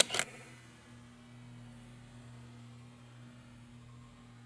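A camera shutter sound effect: two sharp clicks about a fifth of a second apart at the start, then a steady low hum.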